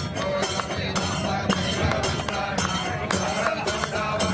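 Devotional Hindu aarti music, with metallic strikes clinking about twice a second over a steady low drone.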